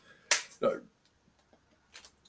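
A single sharp clap of the hands, about a third of a second in, followed by a man's voice saying "So".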